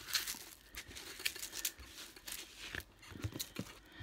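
Hands sweeping and pressing across the plastic film on a diamond painting canvas to flatten it, a crinkling, rustling sound in short irregular strokes.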